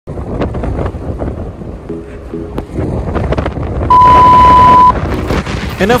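Gusty wind in a snowstorm buffeting the microphone, with scattered small clicks. About four seconds in, a loud steady high beep sounds for one second.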